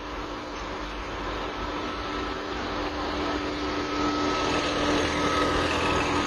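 A steady engine drone under a rushing noise, slowly growing louder.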